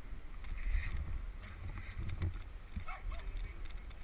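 A car being pushed by hand: an uneven low rumble with scattered light knocks.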